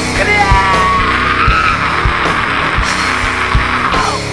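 Live heavy rock band playing, with drums and distorted guitars. A harsh, high, sustained sound rides over them: a few short wavering notes in the first second, then a long rough held tone that breaks off just before the end.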